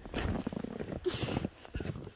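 Footsteps crunching through fresh snow in an irregular walking rhythm, with a brief hiss about a second in.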